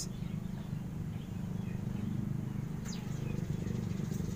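A steady low hum with a few faint, short bird chirps, about two seconds in and again around three seconds.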